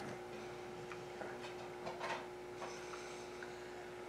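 Quiet room tone with a steady faint hum and a few faint, irregular soft clicks from the lips and the applicator wand as liquid lip color is stroked onto parted lips.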